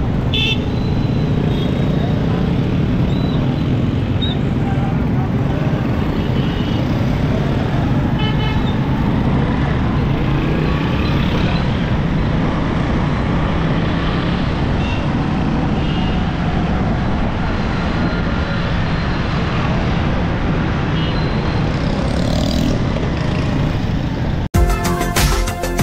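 Dense city street traffic: motorcycle and auto-rickshaw engines running in a steady rumble, with short horn toots now and then.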